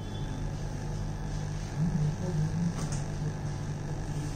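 Small AC induction motor running under TRIAC speed control, giving a steady low hum.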